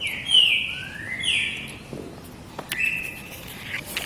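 A bird calling: several high, drawn-out notes, some sliding down in pitch and one sliding up, then a longer even note near the end, with a couple of faint clicks between them.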